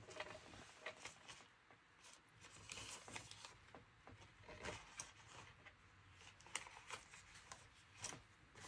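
Near silence with faint, scattered light taps and rustles of craft supplies being handled on a work table.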